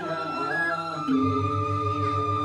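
Balinese genjek music: men singing in parts into microphones with a bamboo suling flute playing a held high line. About a second in, a low pulsing bass enters at roughly five beats a second.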